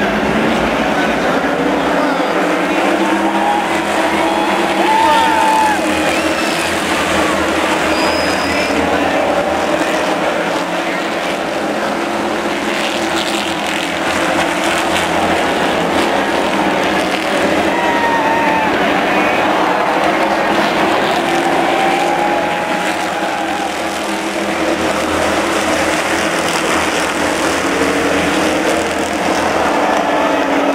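A pack of stock cars racing on the oval, their engines blending into a loud, steady drone that rises and falls a little as the field passes, with voices of nearby spectators mixed in.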